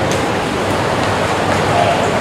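Steady rushing background noise, with faint strokes of a marker writing on a whiteboard.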